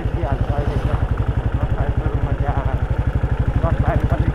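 Motorcycle engine running at a steady road speed, heard from the rider's seat, its exhaust beating in a rapid, even pulse.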